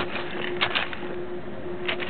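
Digging through dirt and rusty debris: scattered scrapes and small clicks of material being pulled and shifted, a few louder ones about half a second in and near the end.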